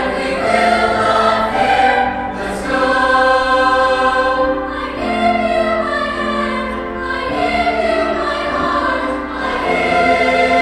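Teenage mixed choir singing sustained chords, the harmony moving to a new chord every two to three seconds.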